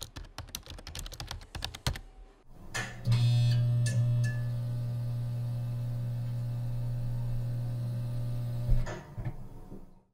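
Quick computer keyboard typing, a rapid run of key clicks, for about the first two seconds. Then a steady low electronic tone from a logo sting comes in about three seconds in, louder than the typing, holds for about six seconds and stops just before the end.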